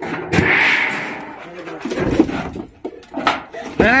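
A thin snake-catching rod knocking and scraping among wooden planks and corrugated sheet metal, with scattered sharp knocks and a brief hiss about half a second in.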